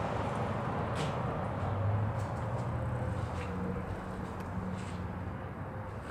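Steady low mechanical hum with a few faint clicks.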